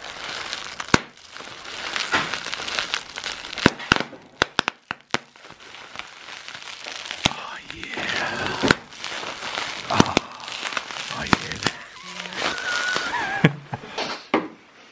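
Clear plastic wrapping crumpled and crinkled in a hand close to the microphone: a continuous rustle broken by many sharp crackles.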